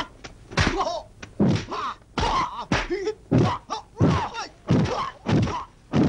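Martial-arts film fight sound: a fast run of about ten dubbed punch and kick impacts, roughly one and a half a second, mixed with the fighters' sharp shouts and grunts.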